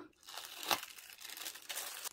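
Tissue paper wrapping crinkling and rustling as its sticker seal is torn and the paper folded back, a soft papery rustle with one sharper crackle a little under a second in.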